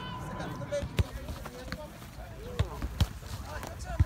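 Soccer ball being kicked on grass: sharp thuds about a second in, then twice close together near the end, with faint children's voices behind.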